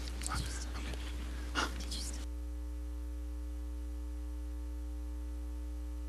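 Faint whispering and rustling with one low knock for about two seconds, then the room sound cuts off suddenly. What is left is a steady electrical mains hum from the sound system.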